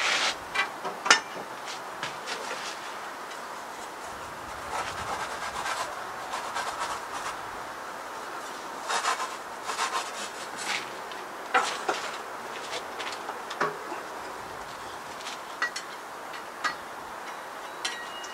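A pizza peel scraping and rubbing on a cornmeal-dusted ceramic pizza stone inside a Kamado Joe ceramic grill as a pizza is slid onto it, with scattered sharp clicks and knocks of the peel and grill parts. The loudest knock comes about a second in.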